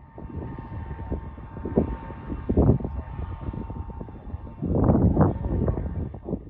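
Large tracked tractor pulling an air drill seeder: engine and machinery running as a low rumble with a steady whine over it, swelling loudly about two and a half seconds in and again around five seconds.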